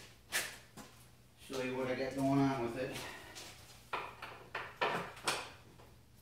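Sharp clicks and knocks of bolts and wooden parts being handled while a wooden stand is bolted together, a few near the start and a quicker run of four near the end. In the middle, a low, steady, voice-like tone lasts nearly two seconds.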